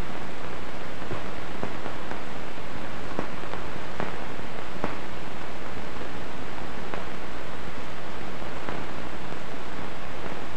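Steady hiss with a few faint clicks scattered through it: the background noise of an old 1950s film soundtrack with no narration or effects.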